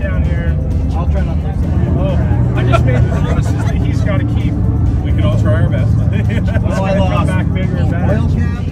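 Several men's voices talking over one another in unclear conversation, with background music and a steady low rumble underneath.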